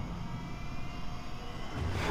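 A steady low rumble with a faint thin drone above it: a cinematic sound effect under an animated fiery title.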